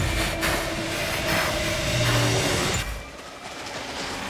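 Film trailer soundtrack: a loud rushing noise mixed with a few held low notes. It drops away sharply about three seconds in.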